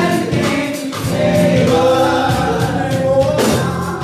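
Gospel worship song: lead singers and a church choir singing with keyboard and drum accompaniment.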